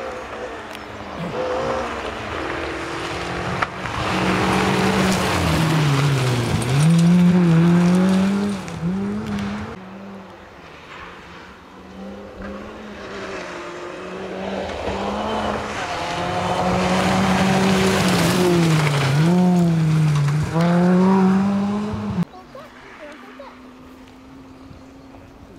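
Two rally cars pass in turn on a gravel stage: first a Peugeot 206, then a Ford Fiesta, engines revving hard with gravel hiss from the tyres. Each engine note drops as the car lifts off for the bend and climbs again as it accelerates away. The sound cuts off abruptly near the end.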